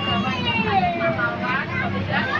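People's voices inside a moving bus, over the steady low hum of the bus running.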